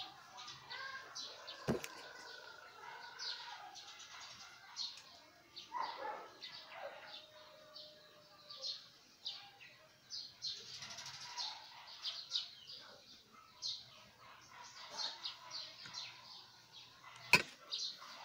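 Birds chirping off and on in short high calls, with two sharp clicks, a small one early and a louder one near the end.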